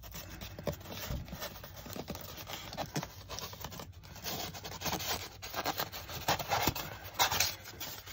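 Rigid foam insulation board rubbing and scraping against the sheet-metal housing of a Coleman Mach rooftop RV air conditioner as it is worked into place by hand, a deliberately tight fit. The scraping is irregular and gets louder in the second half.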